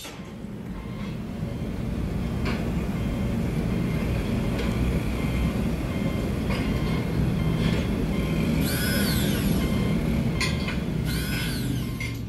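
A soundtrack laid over the sped-up screen capture, fading in and out: a steady low rumble with a few faint clicks, and two short rising-then-falling whistle-like sweeps near the end.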